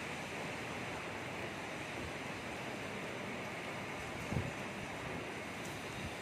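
Steady rushing background noise with no voices, and a single faint low knock about four and a half seconds in.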